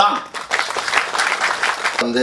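Audience applauding, a dense crackle of many hands clapping that starts about half a second in.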